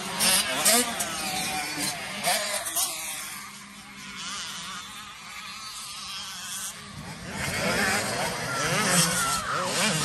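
Dirt bike engines revving on a hill climb, their whine rising and falling in pitch. The sound fades to a lower level in the middle of the stretch, then grows louder again near the end.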